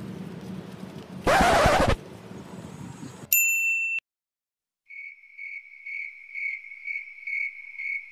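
Cricket-chirp sound effect: a faint, even high chirp repeating about twice a second over dead silence, the comedy cue for an awkward time skip. Before it come a short loud rush of noise and a brief high beep that cuts off suddenly.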